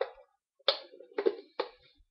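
Three short knocks or taps about half a second apart, each dying away quickly.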